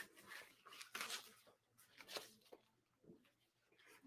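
Faint, intermittent rustling of a fabric blood pressure cuff being handled, in a few short bursts in the first half.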